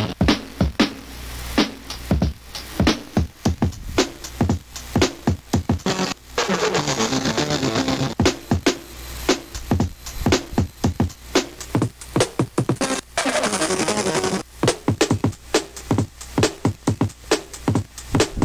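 Drum loop played back by a homemade ISD1760 sample-player chip driven by an Arduino: a sampled drum break repeating in loop mode, a quick run of drum hits, with two stretches of hiss partway through.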